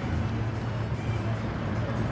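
Roadside street ambience: traffic noise with a steady low hum underneath.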